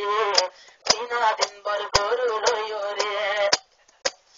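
A Rohingya tarana sung by a male voice with a synthetic, processed sound, punctuated by sharp percussive clicks. The voice breaks off briefly about half a second in and again near the end.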